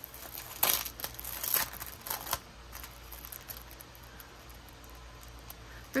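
Plastic wrapping on a rolled diamond-painting kit crinkling as it is handled, with a few sharp rustles in the first two and a half seconds, then quieter handling.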